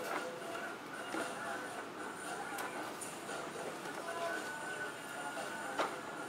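Steady store room tone with a faint high hum, and the light knocks and scrapes of cardboard shotgun-shell boxes being pulled from a shelf, the clearest knock a little before the end.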